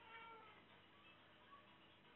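A domestic cat meowing faintly: one short call right at the start, then a fainter brief sound about a second and a half in.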